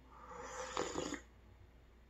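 A slurping sip of hot tea drawn in with air from a mug, lasting about a second.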